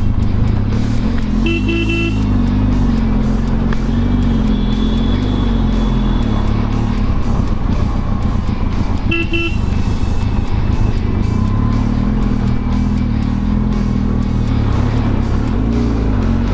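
Benelli TRK 502X parallel-twin engine running at low speed in slow traffic, with two short vehicle horn honks, one about a second and a half in and one about nine seconds in. Background music plays over it.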